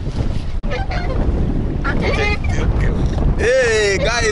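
Wind buffeting the microphone as a small boat moves over the water. Partway through, a man's voice breaks in laughing and exclaiming, loudest near the end.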